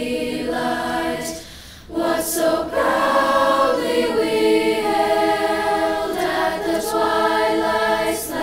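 A group of children's voices singing a slow song together in unison, with a short pause for breath about a second and a half in.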